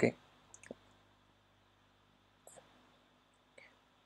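The tail of a spoken "Okay", then near silence broken by a few faint, sharp computer clicks: a small cluster about half a second in, and single ones near the middle and near the end.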